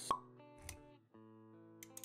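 Animated-intro sound effects over soft sustained music: a sharp pop just after the start, a short low thud under a second in, and a few light clicks near the end.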